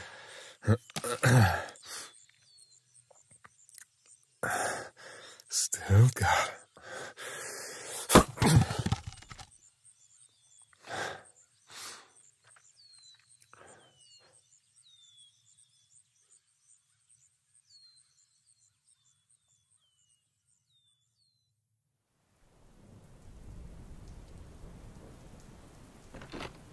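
A man's breathy laughs and sighs over a forest ambience of birds chirping in short, falling calls, which fade out past the middle. After a few seconds of silence, a steady rain hiss comes in near the end.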